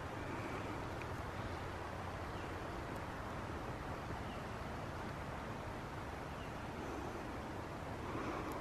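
Steady outdoor background noise in the woods: an even, low rush with no distinct events.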